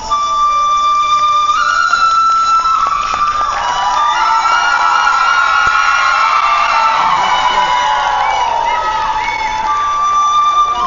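Traditional folk dance music with a high, held melody line that steps from note to note, bending and sliding in pitch through the middle.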